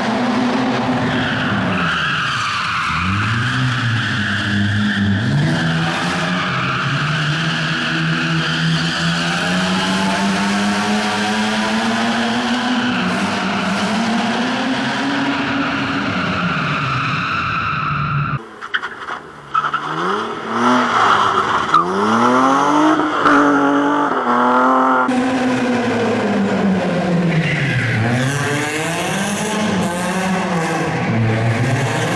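Rally car engines revving hard and dropping back again and again as the cars slide through tight turns, with tyres skidding on the loose surface. The cars include a BMW 3 Series (E36) and an Opel Astra. A little past halfway the sound cuts abruptly, dips briefly, then picks up with another car revving.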